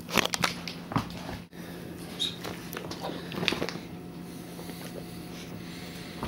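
A dog biting into a cracker and chewing it, crunching: a quick run of sharp crunches right at the start, another about a second in, then scattered crunches over the next few seconds.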